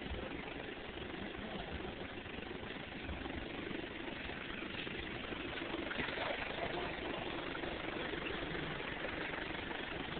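A steady, unchanging engine-like rumble.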